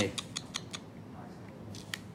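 Small hard plastic toy parts clicking together as they are picked up and handled on a table: a quick run of light clicks in the first second, then a few fainter ones.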